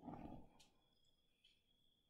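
Near silence, with a soft handling noise in the first half-second as a Buddy portable heater is lifted and moved.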